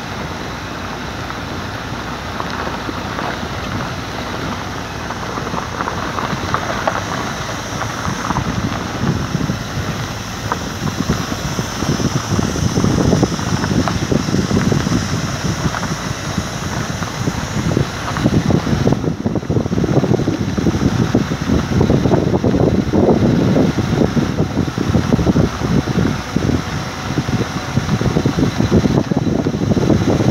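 Wind rushing over the microphone with road noise from a moving vehicle. It is a steady rush that turns louder and gustier around twelve seconds in, and again from about eighteen seconds.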